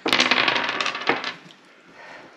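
A brief rattling clatter of small hard objects, dense for about the first second and dying away by about a second and a half in.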